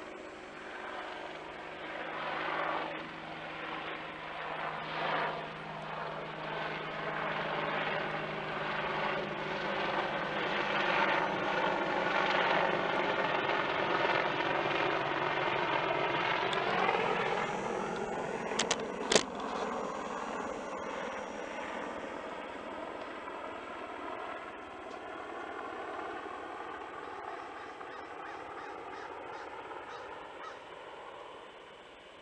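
A low-flying aircraft passing overhead: its engine sound builds, then drops in pitch as it moves away. Two sharp clicks about nineteen seconds in, the loudest moment.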